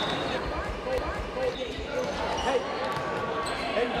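Many sneakers squeaking and feet shuffling on a hardwood gym floor as a group of students does moving warm-up drills, with a low hum of voices under them.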